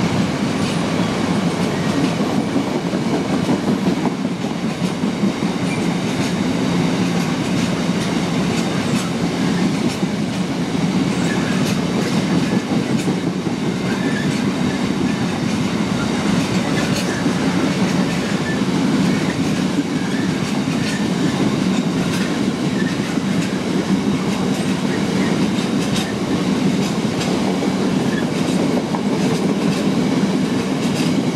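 A long string of freight tank wagons rolling past at steady speed. The wheels keep up an even rumble on the rails, with frequent short clicks throughout.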